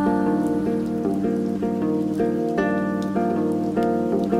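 Background music: a fingerpicked acoustic guitar playing a steady run of notes.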